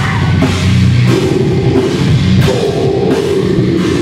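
Rock band playing live and loud, with electric guitar and a drum kit, cymbal crashes landing about a second apart.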